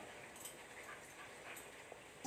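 Very faint room tone with two or three soft ticks.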